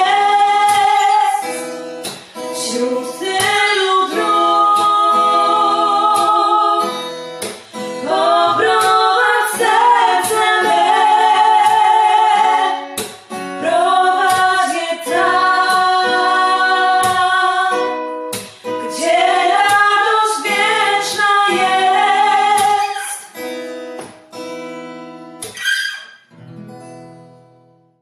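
A woman singing a slow song to acoustic guitar accompaniment, in held phrases with vibrato; the music fades out over the last few seconds.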